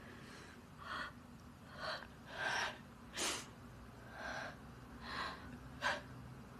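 Quiet crying: a person's breathy sobs and sniffs, about seven of them, roughly one a second.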